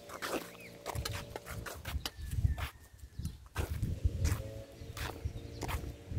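Irregular crunching steps on stony gravel over a low, gusting rumble of wind on the microphone.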